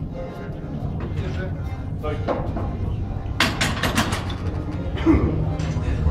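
Background music and voices in a hall, with a loud burst of sharp knocks and clatter about three and a half seconds in.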